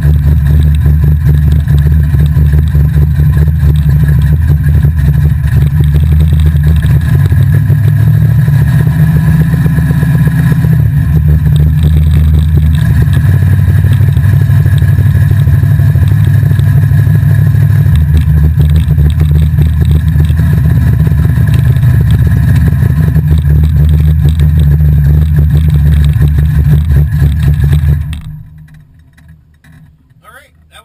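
Drag race car's engine heard from inside the cabin, running loudly at low speed with a dense pulsing exhaust note, then cutting off suddenly about two seconds before the end.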